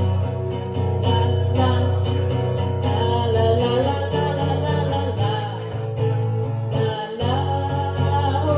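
Acoustic guitar strummed in a steady rhythm, playing a song live.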